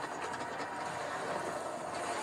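A steady, even rumble-like noise with no distinct hits, from the anime fight scene's soundtrack playing quietly under the reaction.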